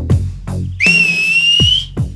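A single long, high whistle lasting about a second. It slides up at the start and then holds steady, laid over background music with deep electronic bass-drum hits.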